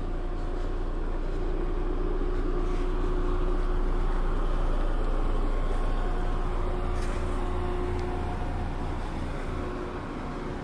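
A motor vehicle's engine running close by with a steady low hum, growing louder toward the middle and easing off near the end as it passes slowly.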